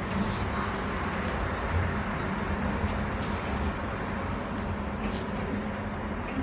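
Cabin running noise of a Siemens U2 light rail car under way: a steady rumble with a constant low hum and a few faint clicks.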